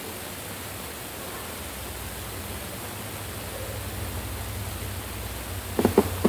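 Steady hiss of room tone and recording noise with a low hum that grows slightly louder partway through. A couple of short knocks come right at the end.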